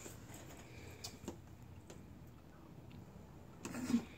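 A few faint, short clicks and taps from a small object being handled in the fingers, over quiet room tone.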